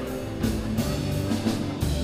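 Live rock band playing an instrumental stretch between sung lines: electric guitars and bass guitar holding chords, with a few drum-kit hits and cymbal strikes.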